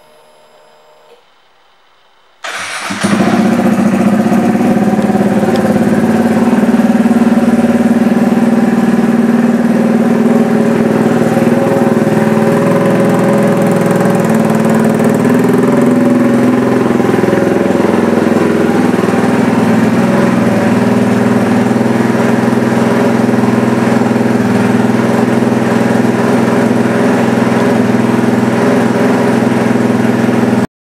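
2018 Kawasaki Z125 Pro's 125 cc single-cylinder engine starting about two and a half seconds in, then running steadily at idle through its aftermarket slip-on exhaust.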